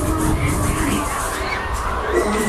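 Loud music from a fairground ride's sound system, with heavy steady bass, and crowd voices mixed in.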